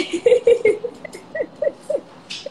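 A woman laughing in a quick run of short, breathy bursts.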